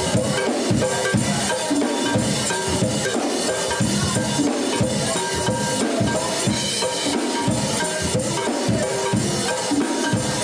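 A live band playing a steady groove: a drum kit keeps the beat under bass, electric guitar and keyboard.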